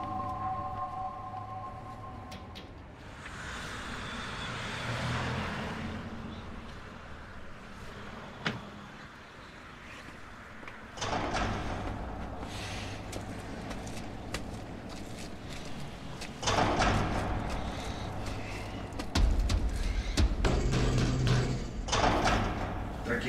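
Road vehicle noise: engines running and traffic passing, swelling and fading several times, with a deep rumble coming in about halfway through and one sharp click before it.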